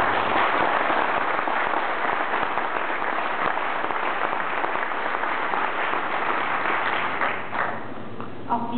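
Audience applauding at the close of a speech, starting at once and dying away near the end.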